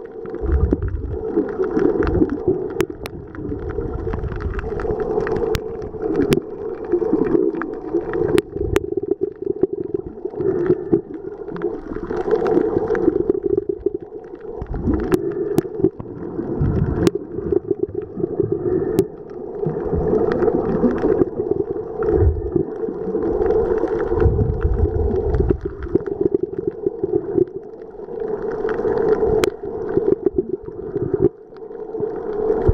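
Muffled, surging churn of water around a submerged waterproof compact camera, picked up by its built-in microphone underwater, swelling and easing every second or two. About a dozen faint sharp clicks are scattered through it.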